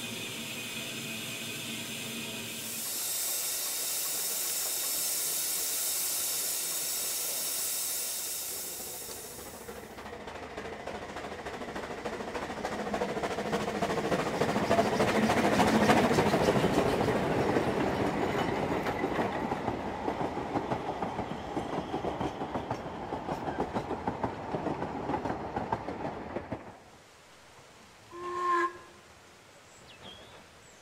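Narrow-gauge steam locomotive: first a steady hiss of steam from the standing engine, rising to a louder high hiss of steam for several seconds. Then a steam train working past, its quick exhaust beats and running noise swelling to a peak about halfway through and fading, until it cuts off near the end, followed by a brief whistle-like tone.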